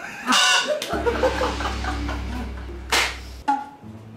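Multi-tube novelty mouth horn blown in squawking, honking blasts, a loud one just after the start and a short one about three seconds in, over a low steady hum.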